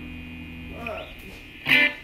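Electric guitar through an amplifier with distortion on: a faint steady amp hum, then one short, loud distorted strum near the end.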